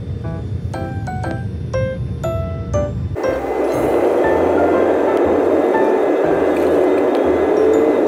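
Background music with light chime-like notes. About three seconds in, a loud, steady rush of airliner cabin noise starts suddenly and carries on under the music: a Boeing 787-9's engines at takeoff power during the takeoff roll. A faint rising tone comes in near the end.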